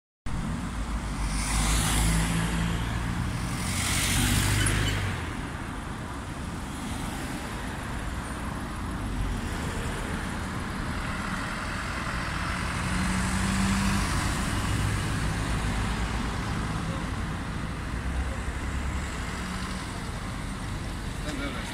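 Road traffic: two vehicles pass close by in the first five seconds, then a steady lower rumble of engines and tyres, with another vehicle passing a little after halfway.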